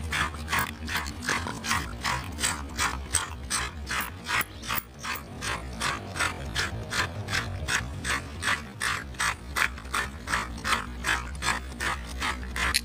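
A red plastic fine-tooth comb dragged again and again across a foam-covered palm, its teeth scraping through the foam in quick, even strokes, about three a second.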